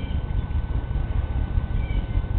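Low, buffeting rumble of wind on the microphone, with faint short high-pitched animal calls near the start and again near the end.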